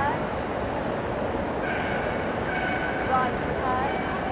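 A dog whining in short, high, wavering cries about halfway through and again near the end, over the steady murmur of a large crowd.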